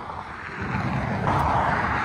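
A car driving past on the highway: steady tyre and road noise that swells about a second in.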